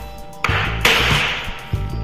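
Hammer knocking a hard tapping block against the edge of a vinyl click floor plank, driving the plank in to close the click joint tight; the loudest knock comes a little under a second in. Background music plays underneath.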